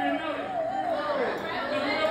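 Chatter: several people in the room talking over each other.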